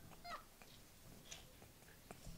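Near silence, broken in the first half second by a few faint, high, gliding squeaks of suppressed, breathless laughter.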